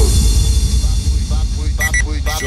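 Brazilian mega funk DJ mix: a deep, sustained bass line carries through, and a voice comes in over it in the second half.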